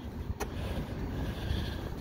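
City street ambience: a low, steady rumble of traffic, with one short sharp click about half a second in.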